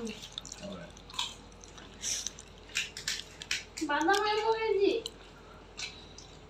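Scattered sharp, crisp clicks and cracks of hollow fried puris being poked open and dipped into spiced water, with a few drips. Near the end, a voice calls out once in a drawn-out rise and fall.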